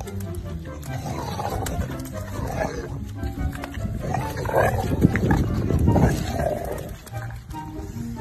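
A golden retriever growling, low and rough, as it mouths a stick; the growl builds to its loudest a little past the middle. Background music plays underneath.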